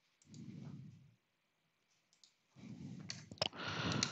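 A few faint computer mouse clicks over a low background rumble, coming in the last second and a half.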